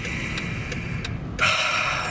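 Inside the cabin of a 2009 Mercedes-Benz S600 stopped in traffic: a low, steady rumble of its twin-turbo V12 idling and the surrounding road, with a few light ticks. A louder hiss joins for about the last half second.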